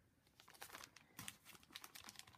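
Faint crinkling of a plastic pocket page (a multi-pocket page protector stuffed with paper embellishments) being handled and turned over, a run of small crackles starting about half a second in.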